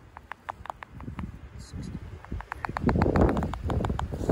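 Great horned owl nestling snapping its bill in a quick series of sharp clacks, about five a second and quickening about two and a half seconds in, a defensive threat display. Wind rumbles on the microphone over the last second or so.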